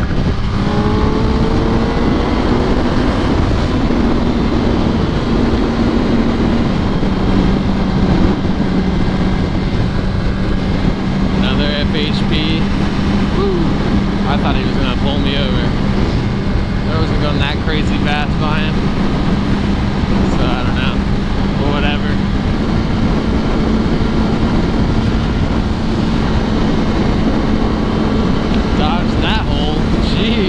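Yamaha R1 sport bike's inline-four engine running at highway cruising speed, holding one steady note that rises slightly about two-thirds of the way through, under a heavy rush of wind and road noise on the helmet microphone.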